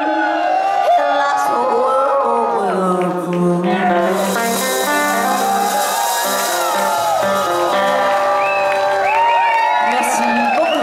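Live band playing garage rock with saxophone, electric guitar, upright bass and drums, while the audience cheers and whoops over the music.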